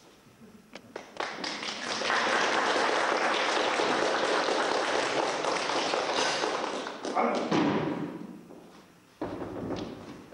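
A theatre audience applauding: a few knocks in the first second, then a burst of clapping that starts about a second in, holds steady and dies away around eight seconds in.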